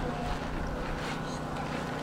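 Outdoor ambience: a steady low rumble of wind on the microphone under a faint steady hum, with faint distant voices.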